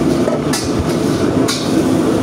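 Gas wok burner running with a loud, steady roar at a commercial wok station. A ladle strikes the wok twice, about a second apart.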